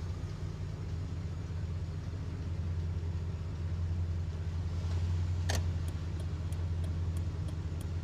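Car engine running steadily, a low drone heard from inside the cabin while driving. One sharp click comes about five and a half seconds in, followed by a few faint, quick ticks.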